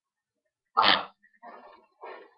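A person sneezing once, a sudden loud burst about three-quarters of a second in, followed by quieter breathy sounds.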